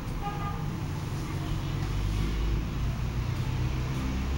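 Low rumble of passing road traffic that builds up through the middle, with a few short high tones near the start.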